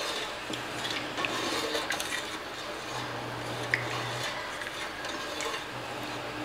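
A wooden spoon stirring milk in a large aluminium pot, rubbing and scraping against the pot's sides and base, with a few light knocks.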